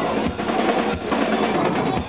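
Rock band playing live on electric guitar and drum kit, the drums loud with fast snare and bass drum hits.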